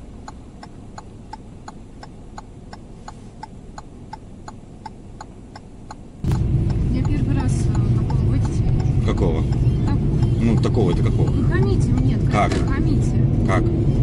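A car's turn signal clicking steadily, about two ticks a second. About six seconds in, a much louder, steady low rumble of the car driving on the road suddenly takes over.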